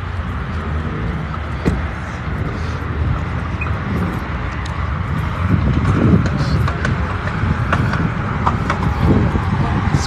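A car engine idling steadily under a low rumble, with people talking in the background.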